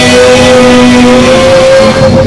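A cappella barbershop-style vocal quartet holding a sustained chord, the top note swelling slightly before the chord breaks off near the end.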